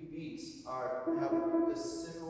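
A person's voice drawn out into one held, slowly falling tone, with hissing consonants just before and after it.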